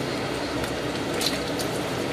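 Wooden spatula stirring chicken pieces and cubed potatoes in a stainless steel pot of thin broth: soft, steady liquid squishing with a few faint light knocks.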